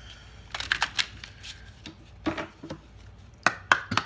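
Tarot cards being handled and shuffled, a string of sharp separate snaps and slaps of card stock, loudest in a quick cluster near the end.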